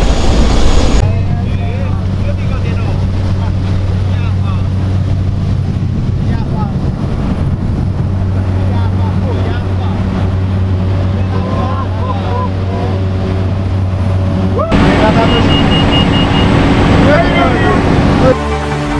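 Steady low drone of a Cessna's single piston engine and propeller, heard from inside the cabin, with faint voices under it. About fifteen seconds in, the sound jumps to a louder, brighter engine noise with voices over it.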